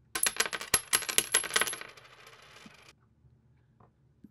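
A rapid jingle of small metallic clinks for about two seconds, tailing off and then cutting off abruptly.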